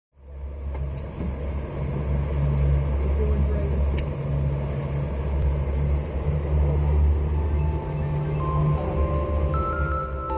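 A boat's engine drones low and steady under a hiss of wind and water. About three-quarters of the way in, music with bright mallet-percussion notes comes in over it.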